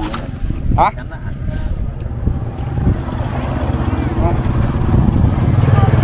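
A small engine running with a rapid low chug, growing louder through the second half as it comes closer.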